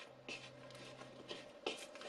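A hand kneading and squeezing shaggy bread dough in a mixing bowl: a series of short, soft scratchy rubs as the dough and loose flour drag against the bowl, the sharpest a little under two seconds in.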